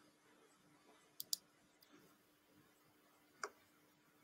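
Near silence over a faint steady hum, broken by faint computer mouse clicks: a quick pair about a second in and one more near the end.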